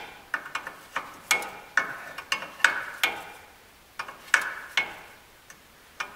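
Metal wrench clicking and clinking as it turns a ball joint nut off a steel suspension spindle, in a string of about a dozen sharp, ringing clicks at two to three a second that stop about five seconds in.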